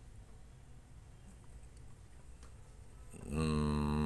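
Quiet room tone with a faint low hum, then about three seconds in a man's voice holds a steady, drawn-out 'uhhh' for about a second.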